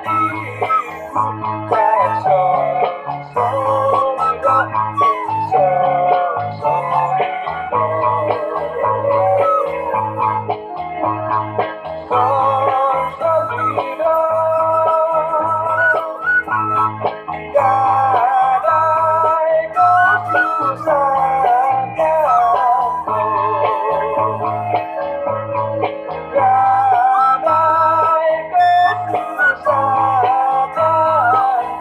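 Bamboo suling flute playing a slow traditional melody with wavering, vibrato-laden notes. It plays over an accompaniment with a steady low beat a little more than once a second and plucked-string backing.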